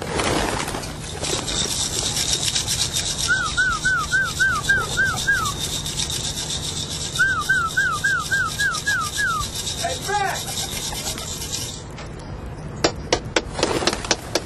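Pigeons at a coop: a rapid fluttering rustle of wings, with two runs of quick, repeated chirping notes and a short lower call about ten seconds in. The flutter stops abruptly near the end, followed by a few sharp clicks.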